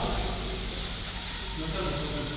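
Steady hiss with faint, indistinct voices.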